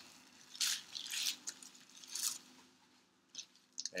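Bubble wrap crinkling and rustling in a few short bursts as it is unwrapped from a package, fading out about three seconds in.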